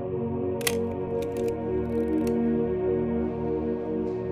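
Slow ambient background music, with one sharp mechanical shutter click from a Pentax K1000 35mm SLR just over half a second in, followed by a few lighter clicks over the next second and a half.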